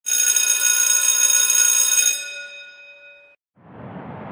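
A bright, bell-like ringing chime of many tones, held for about two seconds and then dying away over the next second or so. A steady background hiss fades in near the end.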